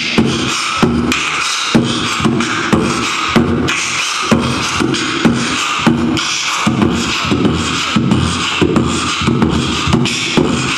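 Human beatboxing into a microphone with hands cupped around the mouth: a steady hip-hop beat of mouth-made kick and snare hits, about two accented hits a second, over a repeating low hummed bass tone.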